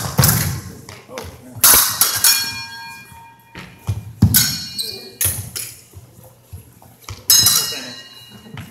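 Épée blades clashing several times, each hit a sharp metallic clink that rings on briefly, mixed with dull thuds of fencers' shoes stamping and lunging on a hardwood gym floor.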